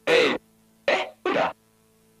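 A person's voice making three short vocal sounds, each under half a second, the last two close together, over a faint steady hum.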